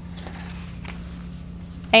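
Faint rustles and light taps of paper cut-outs being handled and laid on a journal page, over a steady low hum. A woman starts speaking at the very end.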